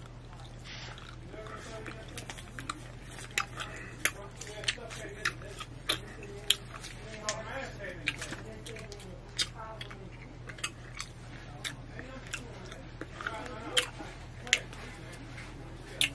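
A person chewing a fresh piece of Kool-Aid chewing gum, with wet mouth clicks and smacks coming irregularly, about one or two a second, over a low steady hum.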